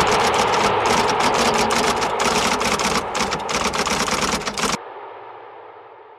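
Typewriter sound effect: a rapid, irregular run of keystroke clicks that stops abruptly a little before the end, leaving a short fading tail.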